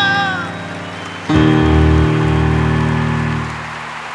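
A man's held, vibrato sung note fades out at the close of a bolero. About a second later a deep final piano chord is struck and rings for about two seconds. Applause starts under it.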